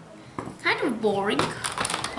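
A voice making a wordless sound that dips and then rises in pitch, with light clicks of metal construction-kit strips and bolts being handled around it.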